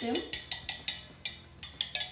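Metal spoons stirring coloured water in glass cups, clinking against the glass in a quick, irregular run of ringing taps.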